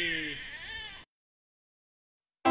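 Infant crying, a wavering wail that weakens and cuts off suddenly about a second in.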